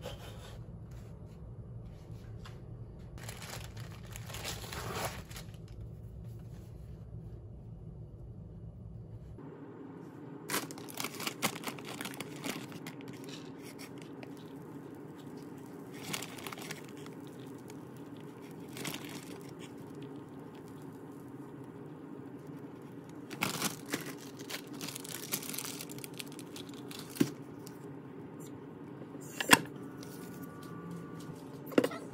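Scattered bursts of crinkling, rustling and scraping from handling flour tortillas, a plastic tortilla bag and a wooden spatula on the ribbed plates of a contact grill, over a steady low hum. A sharp knock comes near the end as the grill lid comes down.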